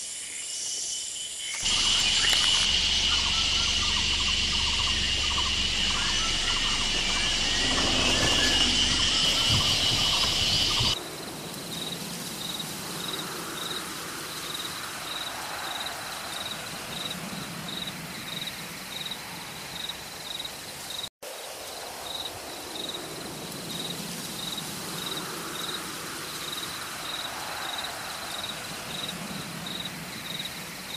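A loud, steady, high-pitched chorus of insects for about the first ten seconds. After a sudden cut, the background is quieter, with an insect chirping steadily about twice a second.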